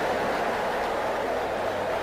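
A congregation talking to one another all at once, a steady crowd chatter in a large hall.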